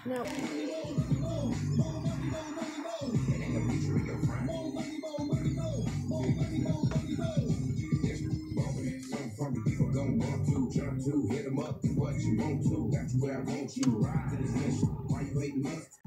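Hip hop music with turntable scratching and rapping, playing from the newly installed aftermarket radio through the truck's speakers, a sign that the speaker wires are hooked up and the factory amp bypass works.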